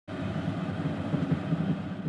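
Steady rumble of a moving train heard from inside a railway compartment.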